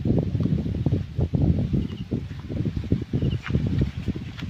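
Wind buffeting the phone's microphone outdoors: an uneven low rumble that gusts and flutters, with a few faint high chirps over it.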